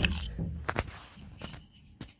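A plastic sliding closet door floor guide being handled and lifted, with rubbing and a couple of light clicks in the middle that fade out near the end.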